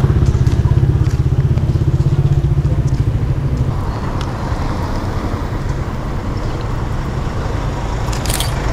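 A motorcycle engine running close by with a low, fast-pulsing note that fades away about four seconds in, leaving general street noise.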